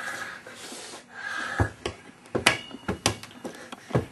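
A rubber playground ball being slapped by hand and bouncing on a hard floor in a rally, about six sharp impacts in the second half of the clip.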